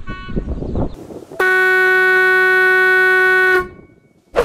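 12 V electric marine horn with a stainless steel trumpet, sounding one steady blast of about two seconds. It starts about a second and a half in, on a single note near F-sharp, and is cut off before the end.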